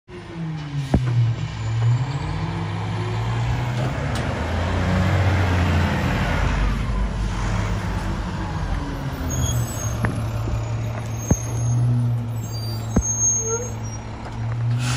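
Diesel engine of a 2011 Republic Services rear-loading garbage truck driving past and pulling up to the curb, its engine note rising and falling at first, then settling to a steady idle. A few sharp clicks or knocks stand out over it.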